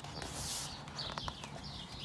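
Birds chirping faintly in the background, with a brief paper rustle about half a second in as a picture book's page is turned, and a couple of small clicks of handling.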